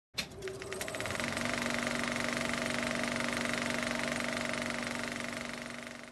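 A machine running with a fast, even rattle over a steady hum, starting with a few sharp clicks and fading out near the end.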